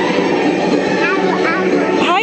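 Steady, dense ambience of an indoor boat ride, a continuous wash of machinery and water-like noise. About a second in, a high-pitched voice gives a few short rising calls.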